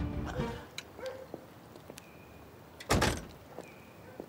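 A car door shut once, a single solid thud about three seconds in, after a music cue fades out at the start.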